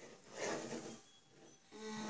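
Small LEGO electric motor driving a model hammer: a brief whirring rattle about half a second in, then a steady low hum that starts near the end.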